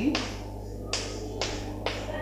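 Chalk tapping and scraping on a chalkboard as letters are written: a few sharp clicks about half a second apart, over a steady low electrical hum.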